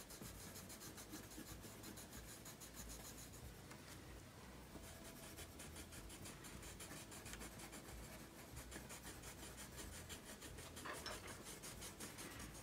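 Colored pencils scratching on paper in quick, repeated shading strokes, faint and steady.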